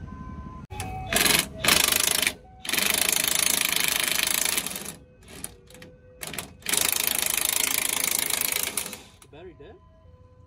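Cordless impact wrench hammering on a nut of a truck's front suspension in a series of bursts: two short ones, a long run of about two seconds, a few quick blips, then another long run that stops shortly before the end.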